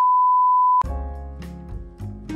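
A loud, steady 1 kHz reference test tone, the beep that goes with colour bars, held for just under a second and cut off abruptly. Then background music with plucked notes begins.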